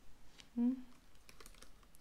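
Laptop keyboard being typed on with long fingernails: a run of light, irregular key clicks through the second half.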